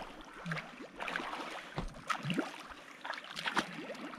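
Light, scattered water splashes in shallow water from a hooked peacock bass thrashing at the bank and a person wading in after it.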